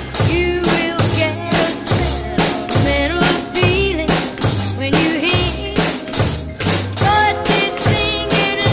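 Drum kit played along with a recorded backing track: the snare and cymbals keep a steady beat while the track's melody runs on over it, with no singing in this stretch.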